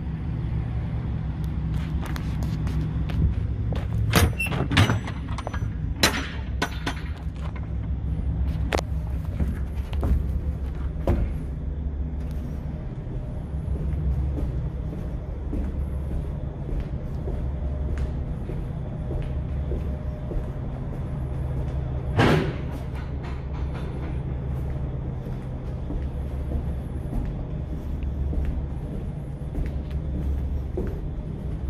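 Rear cargo doors of an insulated van trailer being worked open: a run of sharp metallic clicks and knocks from the latch hardware over the first ten seconds or so, then a single loud knock a little past twenty seconds. A steady low rumble runs underneath throughout.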